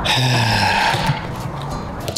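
A person's long, breathy sigh, loud at the start and fading away over about a second and a half.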